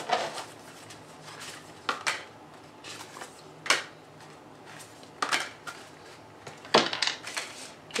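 Oracle cards being shuffled and handled by hand, giving a handful of sharp clicks and taps spaced irregularly, with a small cluster near the end as cards are laid on the table.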